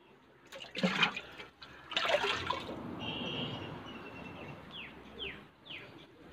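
Water splashing and being poured out of a plastic tub: two loud splashes in the first two and a half seconds, then a pour that fades away.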